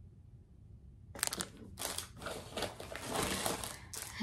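Small plastic bag crinkling and rustling in the hands, irregular crackles starting about a second in.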